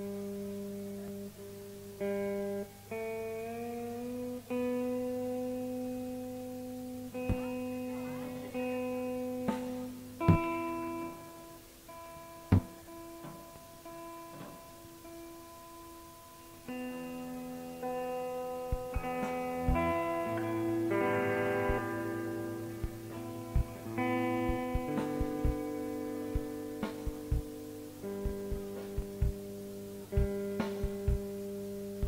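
A guitar being tuned on stage: strings plucked and left to ring, held notes changing step by step, one note sliding up in pitch about three seconds in as a string is tightened, with scattered clicks from the strings and hands.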